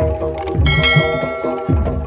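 Jaranan gamelan music: deep drum beats in a steady pattern under metallophone notes. About two-thirds of a second in, a bright metallic strike rings out and fades away near the end.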